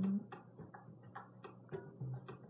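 Rapid, even ticking, about five ticks a second.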